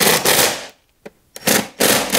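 Cordless impact driver running mounting bolts down in three short bursts: the first lasts under a second, then two quick ones near the end.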